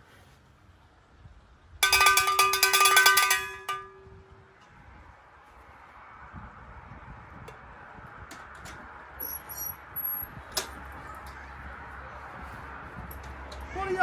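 A small call bell rung rapidly for about two seconds, a quick run of bright strikes whose ring dies away a second later, used to summon someone to bring coffee.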